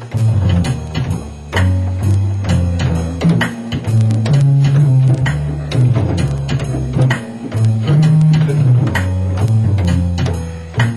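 Hammond Elegante XH-273 organ playing a medium swing tempo with its built-in rhythm section: an automatic drum pattern beneath a bass line that steps to a new note about every half second.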